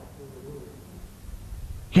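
A pause between spoken phrases: low room hum, with a faint, brief steady tone about half a second in.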